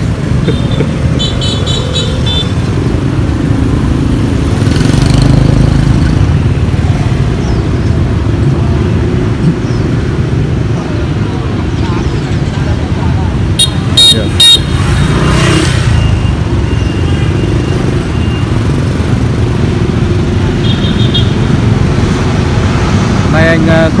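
Street traffic: motorcycles running past with a steady low rumble, and short horn toots about a second in, around fourteen seconds in and again near twenty-one seconds.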